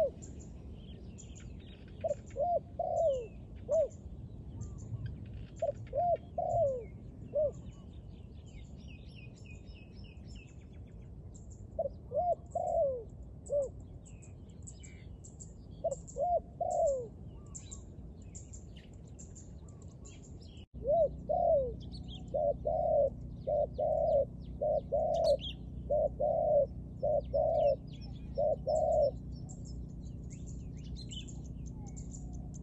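Spotted dove cooing in short phrases of three or four low notes, repeated every few seconds, while small birds chirp high and thin in the background. About two-thirds of the way through, the sound cuts abruptly, and from then on the cooing is louder and almost continuous.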